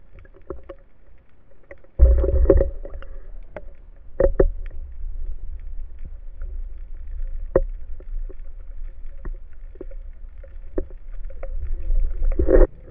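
Muffled underwater sound through a speargun-mounted camera housing: a low rumble of water moving past, with scattered clicks and knocks. The rumble swells suddenly about two seconds in and again near the end.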